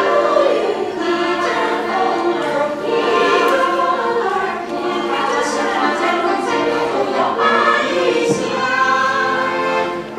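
Small women's chorus singing a Chinese folk song in unison, accompanied by a piano accordion.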